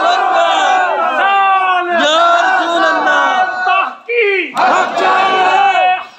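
A crowd of men chanting and shouting a slogan together, in short loud phrases repeated about once a second.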